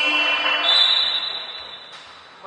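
Electronic scoreboard buzzer in a gym sounding for about two seconds, its tone changing about two-thirds of a second in, then fading near the end. It is the table horn calling a substitution.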